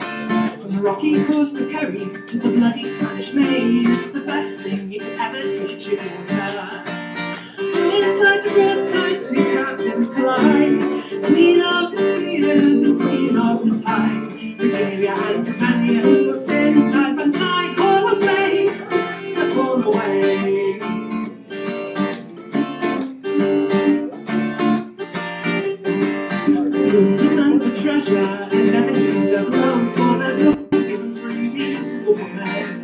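Live acoustic folk band playing a song, with strummed acoustic guitar most prominent and fiddle alongside it.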